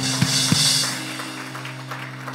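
Live background music from a church band: sustained keyboard chords, with three quick drum hits in the first half-second and a cymbal swell just after.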